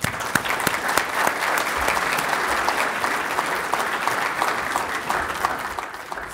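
An audience applauding steadily, the clapping tapering off near the end.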